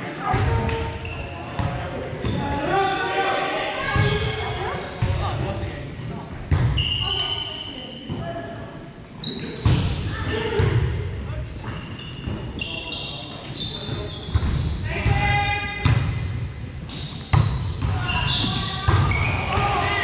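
Volleyball players' voices calling and chattering, echoing in a large gym, with a few sharp smacks of the volleyball being hit or landing on the hardwood floor and short high sneaker squeaks.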